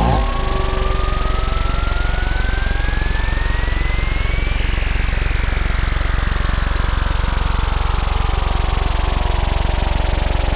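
Serge Paperface modular synthesizer putting out a steady, rapidly pulsing low buzz. Over it a single tone glides upward for about the first four and a half seconds, then a cluster of tones slowly falls for the rest.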